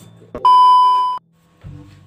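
A single loud electronic beep at one steady pitch, about three-quarters of a second long, starting about half a second in and cutting off suddenly: an edited-in bleep tone.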